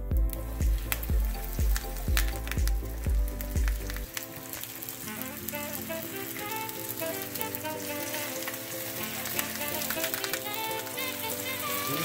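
Rack of lamb searing in hot oil in a cast iron skillet, a steady sizzle, with background music. The music's beat stops about four seconds in.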